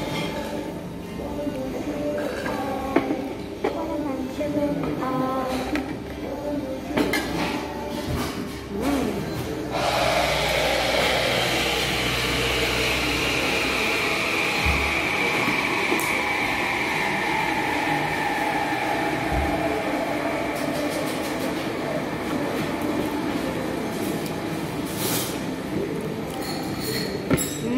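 A machine starts suddenly about ten seconds in and then runs steadily and loudly: a hiss with a whine that slowly falls in pitch. Before it, cutlery and glass clink.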